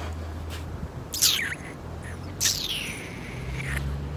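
A bird calling twice: a short high call sliding down in pitch about a second in, then a longer one that slides down and holds. A low steady hum runs underneath.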